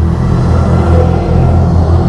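Motorcycle engines idling at a standstill, a steady low rumble, with a heavy dump truck passing close by near the end.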